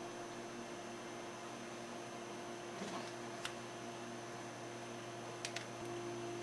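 Low, steady electrical hum with a faint hiss, as of a quiet room; a few faint clicks about halfway through and near the end.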